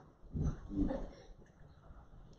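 A short, wordless sound from a person's voice, a little under a second long, starting about a third of a second in.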